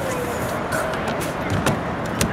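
Steady outdoor street background noise with faint music mixed in, and a sharp click near the end.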